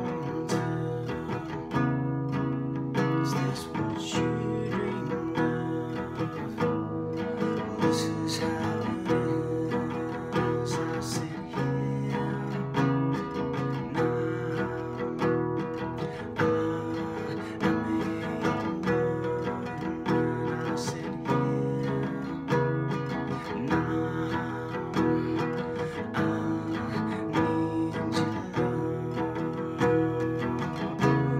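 Nylon-string classical guitar strummed steadily, accompanying a man's singing.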